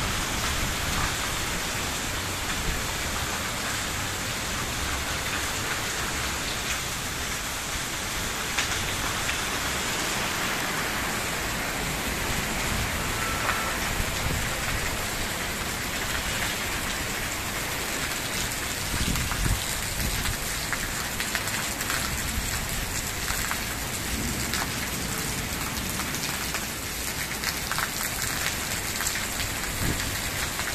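Steady rain falling on a wet terrace and the awning overhead, with scattered drops clicking on nearby surfaces.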